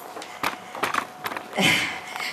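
Handheld microphone being handled during a pause in speech: a few sharp clicks and knocks, then a woman's short breathy "eh" near the end as she is overcome with emotion.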